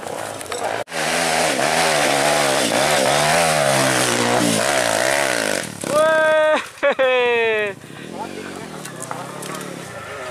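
A dirt bike engine revs hard and unevenly under load as the bike climbs a steep slope. Near the end a man lets out loud shouts, one held and one falling in pitch, and the engine carries on more quietly.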